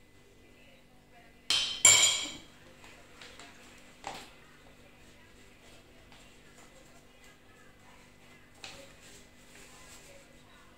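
Metal spoon clinking against a ceramic bowl of melted chocolate: two loud ringing clinks in quick succession about a second and a half in, then two fainter knocks around four seconds and near the end.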